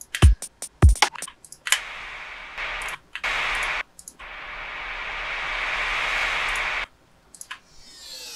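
Electronic sound-effect samples from a song's effects track. Two deep thumps fall in pitch in the first second, then come short bursts of hiss, then a white-noise riser swells for about three seconds and cuts off suddenly.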